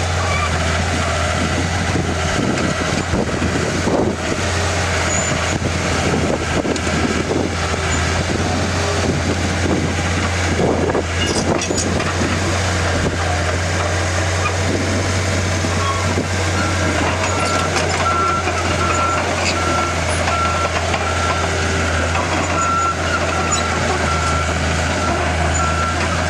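Komatsu D37E-2 crawler dozer's six-cylinder 6D95L diesel running steadily as the machine drives, with clanking from its steel tracks. From about the middle on, a backup alarm beeps over it, roughly three beeps every two seconds.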